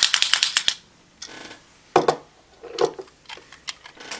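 A Kamen Rider Build Santa Claus Full Bottle, a plastic toy bottle, shaken hard: a fast rattle of about ten clacks a second that stops just under a second in, followed by a few separate light clicks.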